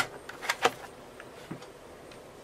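Plastic clicks from the battery release latch and battery pack of an HP Pavilion g6 laptop as the battery is taken out: a sharp click at the start, two quick clicks about half a second in, and a faint one near the end.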